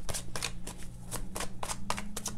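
A deck of tarot cards being shuffled by hand: a quick, uneven run of soft card clicks and snaps. A faint steady low hum runs underneath.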